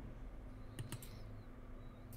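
Computer keyboard keys clicked twice in quick succession, a little under a second in, over a faint steady hum.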